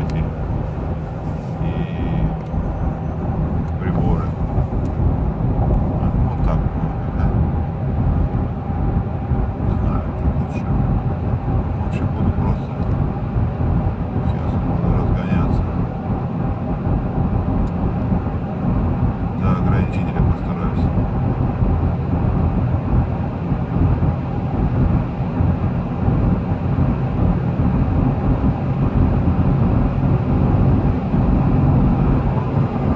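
Inside the cabin of a Toyota Land Cruiser Prado 150 with its 2.8-litre turbodiesel, accelerating on the highway: a steady rumble of engine, tyres and wind that grows slightly louder as speed and revs climb.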